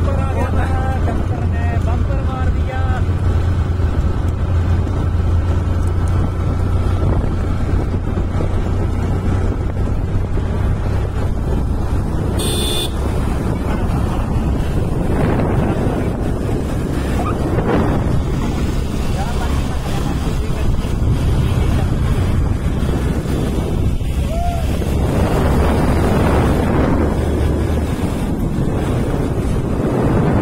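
Motorcycle engine running steadily as the bike rides along, a low drone under rushing wind on the microphone that swells twice in the second half.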